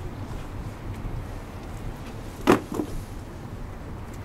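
A sharp knock about halfway through, followed quickly by a lighter one, over a steady low wind rumble.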